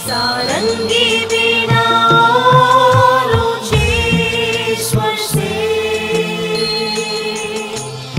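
A family group of adult and child voices singing a slow devotional song together, holding long notes, over a backing track with a bass line and a steady beat.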